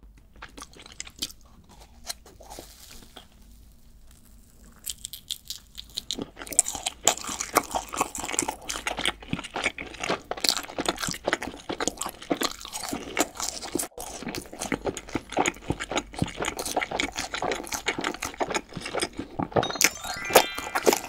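Close-miked biting and chewing of a crumb-coated fried cheese ball: soft and sparse at first, then dense, crisp crunching from about six seconds in.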